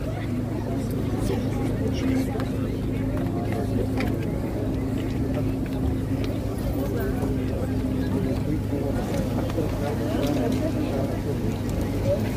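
Hearse engine idling with a steady low hum, under the indistinct chatter of people standing nearby.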